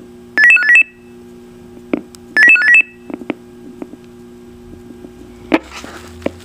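Maxon SM-4150 VHF mobile radio giving two short bursts of quick alternating high-pitched beeps, about two seconds apart, with sharp clicks of its controls in between, over a steady low hum.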